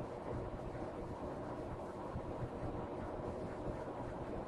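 Steady low background noise with no distinct sounds.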